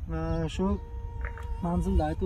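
A man's voice in drawn-out, evenly pitched syllables. A thin steady hum comes in just under a second in and holds under the voice.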